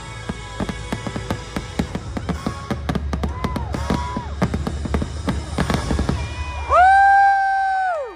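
Fireworks popping and crackling in quick, irregular bursts over the show's music soundtrack and a low rumble from the crowd. Near the end a voice holds one long high note.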